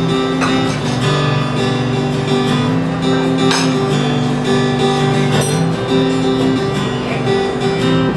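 Acoustic guitar strummed in a steady chord progression: the instrumental intro of a folk song, before the vocal comes in.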